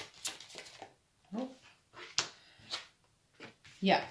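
Tarot cards shuffled with quick clicks, then a few cards laid on the table with separate sharp taps. A short low vocal sound about one and a half seconds in, and a spoken word at the end.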